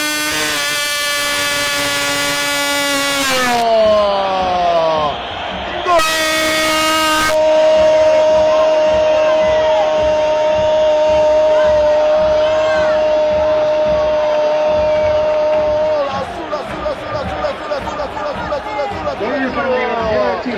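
Radio football commentator's drawn-out goal call: a long held shout on one steady note that slides down in pitch, followed by a second steady held note of about eight seconds that breaks off about sixteen seconds in. It announces a goal.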